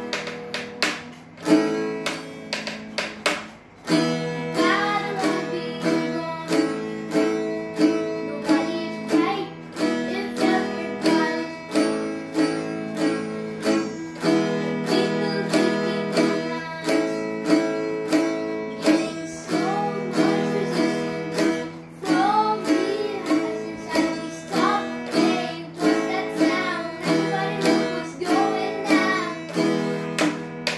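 Acoustic guitar strummed in a steady, even rhythm, with a boy singing along; the singing comes in about four seconds in, after a short gap in the strumming.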